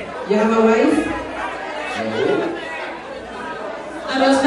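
A woman's voice singing through a microphone in held notes that step up and down in pitch, over a crowd chattering.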